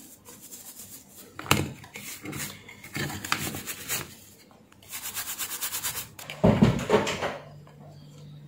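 Soft brush scrubbing back and forth over the solder side of a printed circuit board to clean it with alcohol, in bursts of quick scratchy strokes. Near the end comes a heavier handling knock, then a steady low hum.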